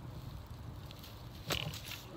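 Faint outdoor background, then a short cluster of clicks and rustles about one and a half seconds in as hand tools are handled and a hand saw is picked up off the grass.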